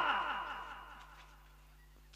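The echo tail of an actor's amplified line, repeating and dying away through a PA system's echo effect until it fades to near silence about a second and a half in, with a faint steady hum beneath.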